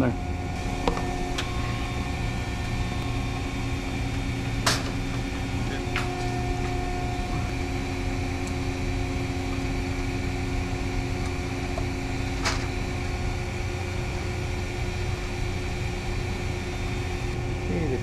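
Steady mechanical hum made up of several constant tones, like ventilation or machinery running. A few sharp clicks stand out over it, the clearest about a third of the way in and again about two-thirds through.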